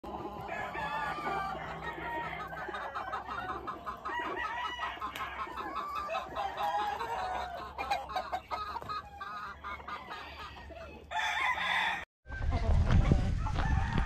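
Gamefowl roosters crowing over and over with hens clucking, many birds calling at once from a yard of pens. Near the end the audio cuts out for a moment, then comes back louder with a low rumbling noise.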